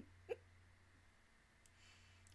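Soft giggling from a woman: two short voiced pulses in the first half-second, then a quiet breath in near the end.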